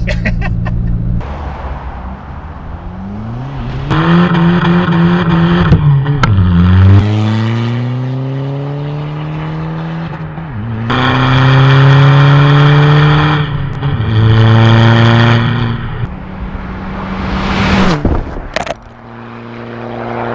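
Tuned VW Bora 1.9 TDI four-cylinder diesel accelerating hard, its engine note climbing in pitch and dropping at each of several quick upshifts.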